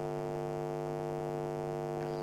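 Steady electrical hum, a constant buzz made of one low pitch and its many overtones, with no change in pitch or loudness.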